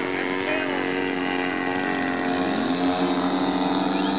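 Precision Aerobatics Addiction radio-controlled aerobatic model plane's motor and propeller running steadily, with its pitch stepping up slightly a little over halfway through.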